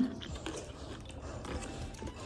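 A person chewing a mouthful of boiled chicken, with soft, scattered wet mouth clicks.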